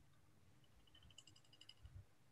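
Near silence on a video call, with a faint run of quick small clicks through the second half.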